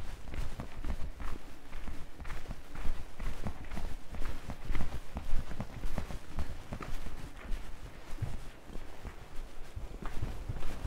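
Footsteps of a person walking at an easy pace along a hard village lane, irregular steps a few times a second, over a low steady rumble.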